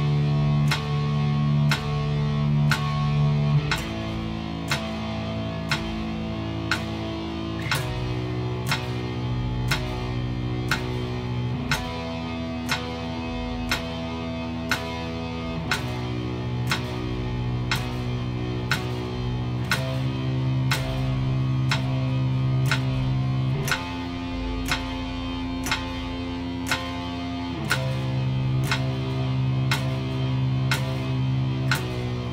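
Electric guitar playing a string-skipping picking exercise on power-chord shapes, the chord changing about every four seconds. Regular sharp clicks keep time throughout.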